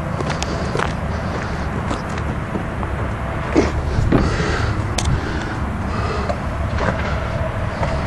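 Car hood being released and raised, heard as a few light clicks and a knock over a steady low rumble.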